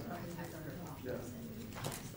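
Indistinct conversation: several people chatting at once in a large room, with a brief click near the end.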